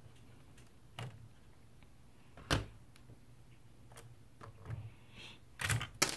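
Hard plastic Lego pieces clicking and knocking as a hull plate is lifted off a large brick-built model. A few sparse clicks, the loudest about two and a half seconds in, with a short cluster near the end.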